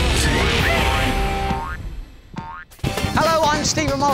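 Title-sequence theme music of a children's TV show, with cartoon sound effects: rising pitch glides of the boing kind. The music drops away briefly a little after two seconds, with one more rising glide, then comes back with a wavering voice near the end.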